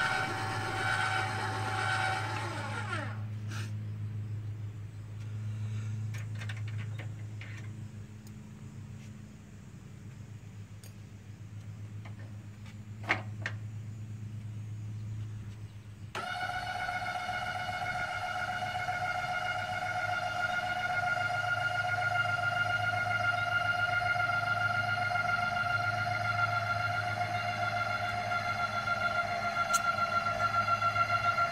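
Electric trailer tongue jack motor whining steadily as it lifts the trailer coupler off the hitch ball. It runs for the first few seconds, stops, and starts again about midway, running under load to the end over a steady low hum.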